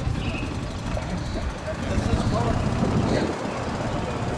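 A car engine running with a low, steady rumble that grows louder about halfway through, with people talking faintly in the background.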